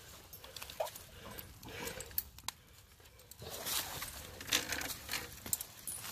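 Hunting hounds close by, one giving a short whine about a second in, followed by rustling and crunching in leaf litter from the middle on as the dogs and men shift around.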